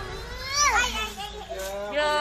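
Children's voices: a high-pitched child's call about half a second in, followed by more chatter.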